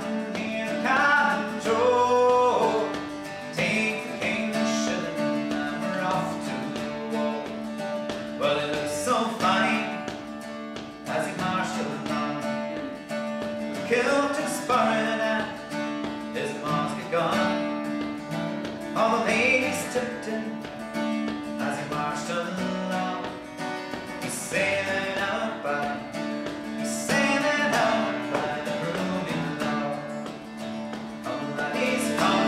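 Folk song played on strummed acoustic guitar and bouzouki, with fiddle and a voice carrying the melody.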